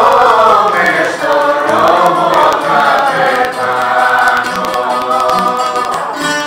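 Live rebetiko music: singing voices holding long, wavering notes over bouzouki accompaniment.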